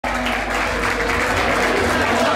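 A crowd clapping, with music playing over it.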